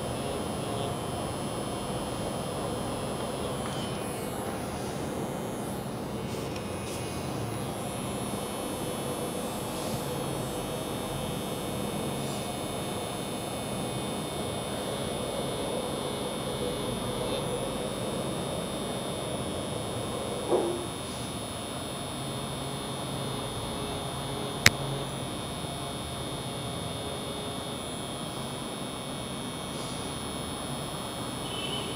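Permanent-makeup tattoo pen machine running steadily with a high buzz and hum while it draws hair strokes. There is a brief sliding squeak about twenty seconds in and a single sharp click a few seconds later.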